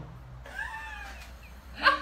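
A single high-pitched call, less than a second long, that rises and then falls in pitch.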